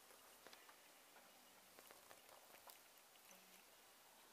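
Near silence: faint room tone with a few soft clicks scattered through it.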